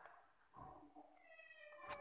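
Near silence, with a faint, short pitched call in the second half.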